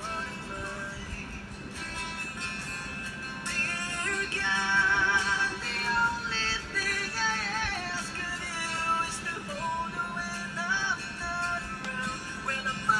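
A man singing over acoustic guitar. The voice gets louder about four seconds in, with wavering held notes.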